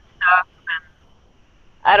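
Two short bursts of a woman's laughter heard over a video-call connection, then she starts speaking near the end.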